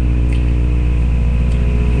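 A steady low hum that holds an even pitch and level throughout.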